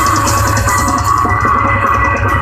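Heavy metal band playing live and loud: electric guitar over bass and drums, with the cymbal strokes thinning out in the second half.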